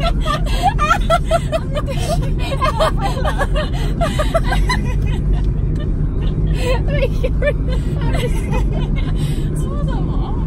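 Two women laughing, mostly in the first half and again briefly near seven seconds in, inside a moving car's cabin over the steady hum of road and engine noise.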